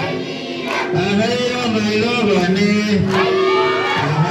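A group of voices singing a Nepali Deusi song, the call-and-response chant sung at Tihar, with drawn-out sung notes.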